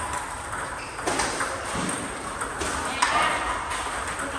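Table tennis balls clicking off bats and the table in a fed multiball drill, with underspin feeds returned off a short-pimpled rubber. There is a sharp click every second or so.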